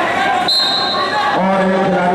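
Men's voices in a large, echoing sports hall, with one short, steady high whistle tone about half a second in; from a little past the middle a voice holds steady notes.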